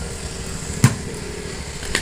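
A single short sharp click a little under a second in, from a hand handling the scooter's rubber-sleeved brake lever, over a low steady background rumble.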